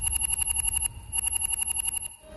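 Sci-fi communicator ringing for an incoming call: a rapid electronic trill of beeps, about ten a second. It comes in two bursts of nearly a second each, with a short break between them.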